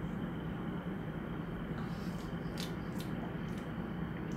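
Two people sipping a fizzy ginger ale from glasses, heard faintly over steady room noise, with a few small clicks about halfway through.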